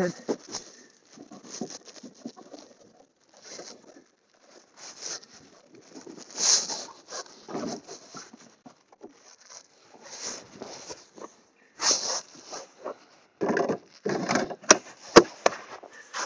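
Irregular scraping and crunching of wet snow being cleared by hand from a single-stage snow blower's clogged impeller housing, the machine switched off. Two sharp clicks come near the end.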